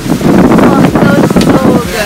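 Wind buffeting the microphone aboard a moving boat, with a young woman laughing over it.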